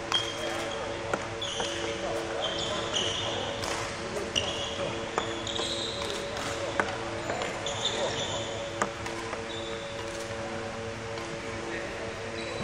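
Badminton court shoes squeaking in short, high chirps on the hall floor during footwork, with a few sharp thuds of feet landing, over a steady hum.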